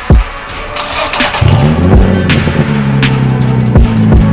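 Infiniti G35's VQ35DE V6 engine starting about a second and a half in and settling into a steady idle, under music with a regular drum beat.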